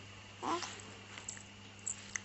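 A two-month-old baby's brief coo about half a second in, then a few faint small clicks.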